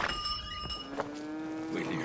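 A cow mooing: one long, steady low call that starts about a second in. A short high ringing tone sounds just before it.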